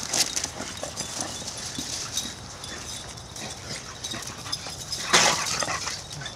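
Boxer dogs running and scuffling across the yard, their footfalls making irregular soft knocks, with one louder burst of noise about five seconds in.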